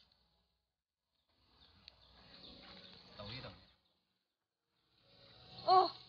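Mostly dead silence. About two seconds of faint outdoor background noise with a single sharp click sit in the middle, and a woman's loud exclamation comes near the end.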